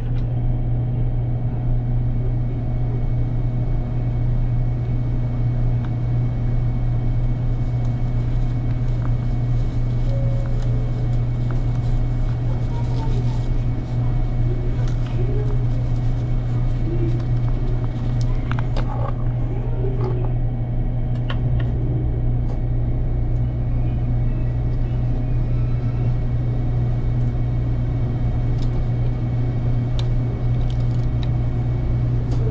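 Steady low hum inside the passenger car of an electric limited express train standing at a platform, with faint voices and a few light clicks. Another train draws in alongside partway through.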